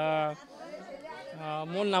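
Speech: a man talking, with a drawn-out word at the start and a short pause before he goes on, over background chatter of other voices.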